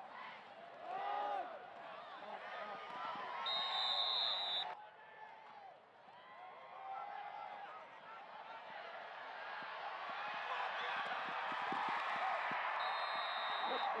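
Football stadium crowd shouting and cheering, swelling into loud sustained cheering over the last several seconds. A referee's whistle sounds twice, a steady shrill blast about four seconds in and another near the end.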